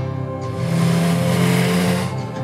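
Motorcycle engine revving as it rushes past, starting about half a second in and growing loud, over background music.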